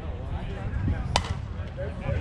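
A softball bat striking a pitched softball: one sharp crack a little over a second in.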